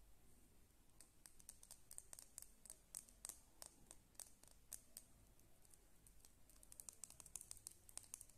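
Fingernails tapping and crinkling on a shiny teal stick, a soft, quick run of small sharp clicks. It starts about a second in, pauses briefly in the middle and picks up again in a dense cluster near the end.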